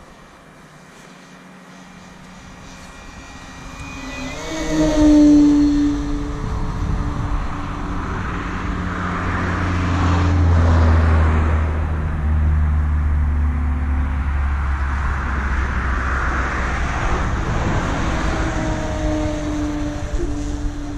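E-flite Carbon-Z Cub SS RC plane's electric motor and propeller running in flight, a pitched whine that shifts in pitch and peaks about five seconds in as the plane passes. A steady low rumble joins it from about eight seconds in.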